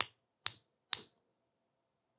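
Three short, sharp clicks about half a second apart, then silence.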